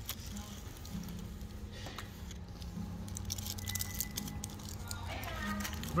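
Aluminium foil wrapper crinkling in the hands as a taco is bitten and chewed, in short scattered crackles. Under it runs the background of restaurant chatter and faint music.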